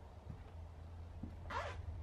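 A short rasping scrape about one and a half seconds in, over a steady low hum.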